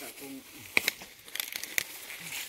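Dry grass and leaf litter crackling in a few sharp, crisp clicks, with a brief murmur of a voice at the start.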